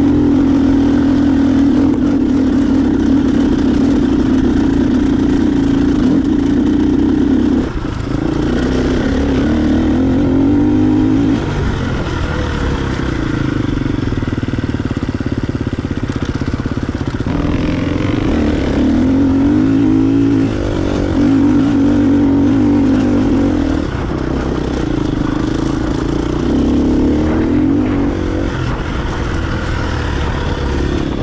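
Enduro motorcycle engine heard on board, running hard. Its note rises and falls with the throttle, and it dips briefly about four times.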